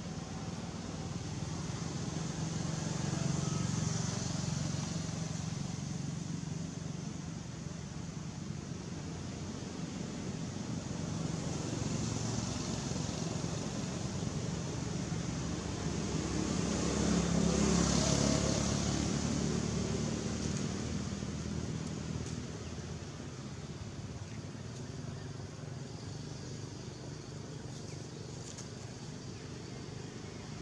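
Engine sound of passing motor vehicles: a steady hum that swells and fades, rising to its loudest about two-thirds of the way through before dying away.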